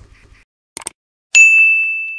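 Subscribe-animation sound effect: two quick mouse clicks, then a single bright notification-bell ding, the loudest sound, that rings on and slowly fades.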